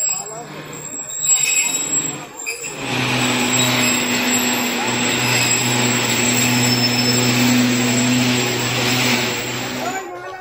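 Passengers' voices on a crowded railway platform. About three seconds in, a loud steady train sound with a deep hum and a hiss starts and holds.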